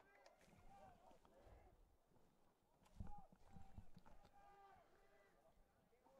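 Near silence with faint, distant voices calling out, and a few faint knocks.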